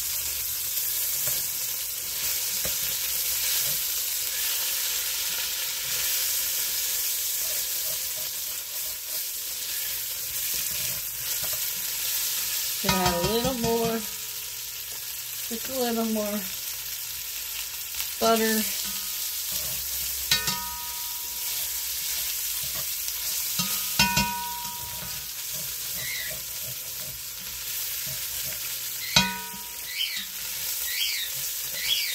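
Stewing beef, seasoned and coated in flour, sizzling steadily as it browns in olive oil and butter in an enameled Dutch oven, stirred now and then with a slotted spatula. About half a dozen short squeaky sounds rise above the sizzle in the second half.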